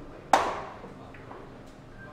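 A single sharp clack of hard balls striking, with a short ringing tail, about a third of a second in: billiard balls colliding.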